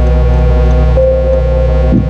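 Dark, slow electronic music played on a Roland MC-101 groovebox and TR-6S drum machine: a sustained synth drone over a deep, steady bass, with a higher synth note coming in again about a second in.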